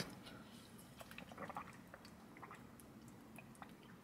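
Near silence with faint drinking sounds from a plastic water bottle: small swallows and scattered light clicks.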